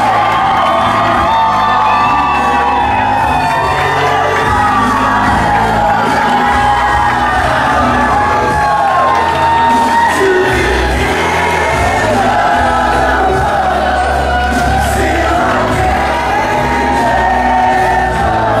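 A recorded soul ballad medley played loud over a club sound system: a solo singer's held, gliding vocal over bass, with audience members whooping and cheering over it.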